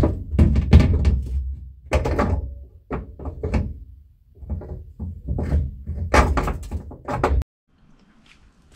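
Repeated irregular knocks and thuds of a coilover being worked up into a car's strut tower, metal on sheet metal, stopping abruptly near the end.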